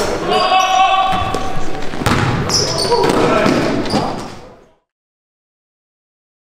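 Sounds of an indoor basketball game: players' voices and a ball bouncing on the gym floor, fading out to silence about four and a half seconds in.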